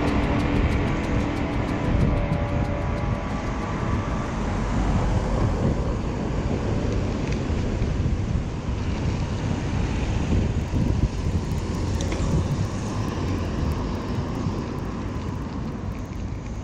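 Background music fading out over the first few seconds, giving way to a steady rumble of wind on the microphone of a moving bicycle, with road traffic going by.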